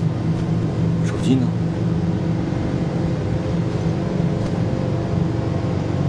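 A steady low rumble with indistinct voices in it.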